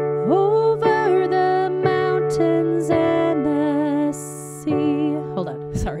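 A piano plays a D major chord over a D bass note, re-struck about once a second in a steady marching rhythm, while a woman sings the first line of the verse along with it. A brief spoken word comes near the end.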